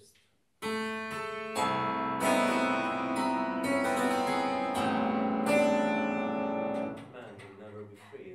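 Grand piano sounding a dense, sustained mass of ringing tones, built up by several fresh attacks starting about half a second in and then cut off suddenly near the end.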